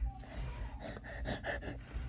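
A child's breathy, whispered vocal sounds close to the microphone, hushed rather than spoken aloud.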